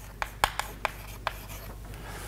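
Chalk writing on a chalkboard: a series of short, sharp taps and scratches as numbers and letters are written.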